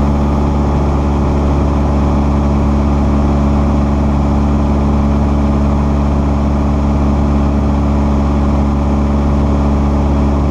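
The engine and propeller of a Cessna 172SP, a four-cylinder Lycoming, running at a steady power setting, heard inside the cabin.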